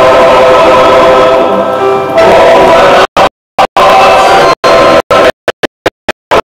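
Male voice choir singing sustained chords. About halfway through, the recording begins cutting out, the sound chopping into short stuttering bursts with dead silence between them.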